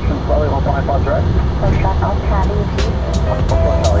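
Steady low rumble inside an Airbus airliner's cockpit as it taxis, with air traffic control speech over the radio on top.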